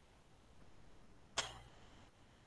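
A single short, sharp knock or click about one and a half seconds in, over quiet room tone.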